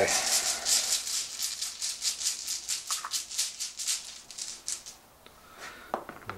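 Bolt Action order dice rattled together as they are shaken in their container, in a quick even rhythm of about four shakes a second, stopping about five seconds in.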